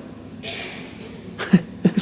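A person coughing briefly near the end, after a soft breathy hiss.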